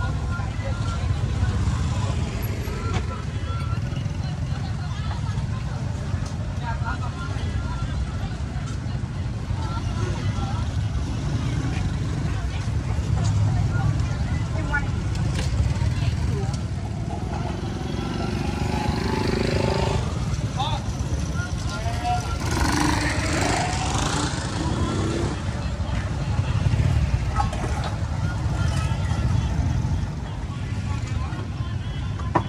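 Busy street ambience: a steady low rumble of motorbike and traffic noise, with people talking over it.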